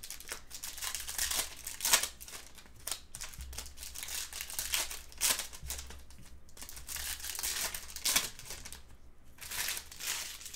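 Foil trading-card pack wrapper crinkling and tearing, with irregular sharp crackles, as the cards inside are pulled out and handled.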